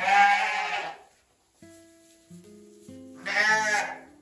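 A sheep bleating twice: a loud baa at the start and a second one about three seconds later, over background music.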